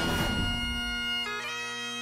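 Bagpipe music: a steady drone under a held chanter melody, the melody notes changing a little past halfway.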